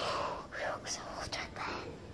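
A boy whispering close to the microphone: breathy, unvoiced speech in short bursts.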